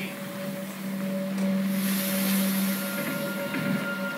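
Film soundtrack of a storm on the lake, rushing wind-and-water noise with music underneath, played back through room speakers over a steady low hum. A burst of high hiss comes about halfway through.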